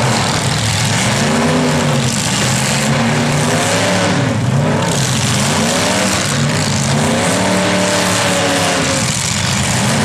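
Demolition derby cars' engines revving hard, the pitch rising and falling in repeated surges about every second or two.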